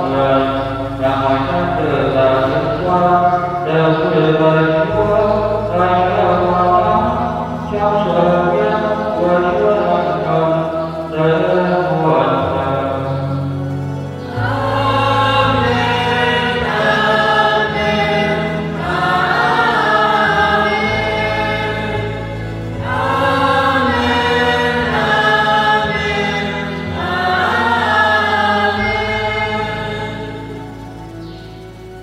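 Church choir singing a slow hymn over held low accompaniment notes that change every few seconds; the music fades in the last couple of seconds.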